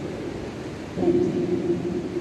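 A voice over church loudspeakers, echoing in a large hall, over a steady low hum; it gets louder with a held pitch from about a second in.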